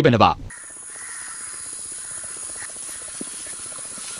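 A man's voice ends about half a second in, then a steady hiss of location ambience.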